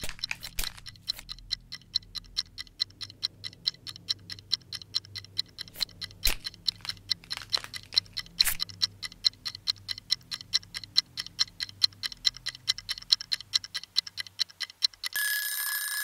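Quick, even mechanical ticking, several ticks a second, over a faint low hum, with a few louder clicks. Near the end the ticking stops and a steady ringing tone sounds, like an alarm going off.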